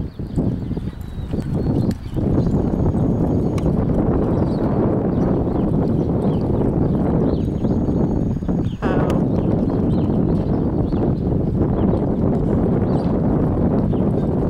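Hoofbeats of a horse galloping and turning on soft, sandy arena dirt during a barrel-racing run, under a steady low rumble on the microphone.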